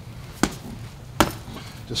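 Two sharp smacks of boxing-glove punches landing on a partner's gloved guard, the second the louder, about three quarters of a second apart.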